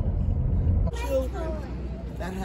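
Low road rumble of a car driving, heard from inside the cabin. It cuts off abruptly about a second in, giving way to quieter street noise with faint voices.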